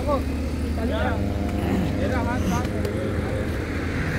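Road traffic: cars passing on the road, with a steady low rumble of engines and tyres.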